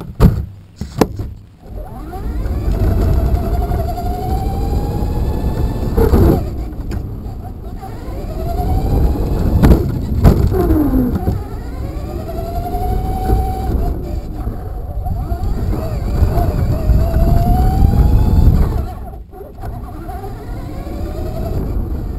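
Traxxas Slash RC truck driving on pavement, heard from a camera taped to its body. Its electric motor and drivetrain whine, rising and falling in pitch with the throttle, over a loud rumble and rattle from the tyres and chassis. Several sharp knocks in the first two seconds, and one more about halfway through.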